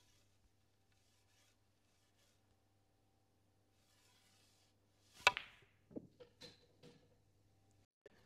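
Snooker balls clicking during a hard screw-back shot on the black: one sharp, ringing click about five seconds in, then several softer knocks over the next second and a half.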